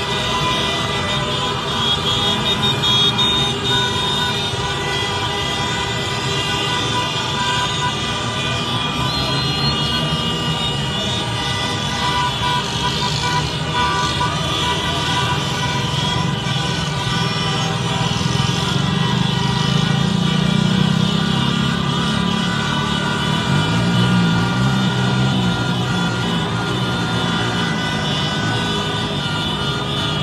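Celebratory street din: many car horns sounding at once, held and overlapping, over the noise of a large crowd, swelling a little past the middle.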